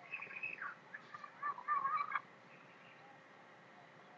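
A few faint, high chirping bird calls in quick succession during the first two seconds, then only a low, steady background hiss.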